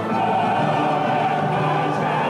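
Large choir with orchestra performing classical choral music, the voices holding long, sustained notes.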